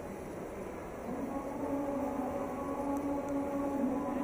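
Indoor shopping-mall ambience: a steady hum and murmur of a large hall, with faint steady tones coming in about a second in.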